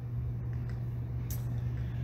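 Steady low hum over faint low rumbling background noise, with a brief soft hiss about one and a half seconds in.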